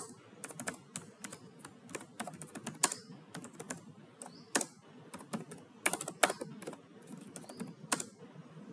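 Computer keyboard typing: irregular keystroke clicks, some in quick runs and some singly with short pauses.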